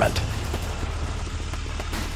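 Battle sound effects: a steady low vehicle rumble with faint scattered crackles, slowly fading.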